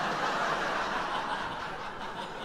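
Live stand-up audience laughing together, a crowd laugh that slowly dies down.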